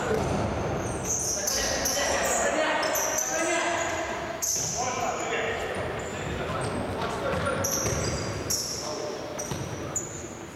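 Futsal players' shoes squeaking in short, high chirps on the sports-hall floor, with thuds of the ball and players' shouts echoing in the large hall.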